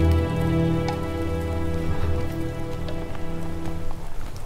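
Film score music: a sustained chord held steady, with a few faint ticks over it. It cuts off suddenly at the end.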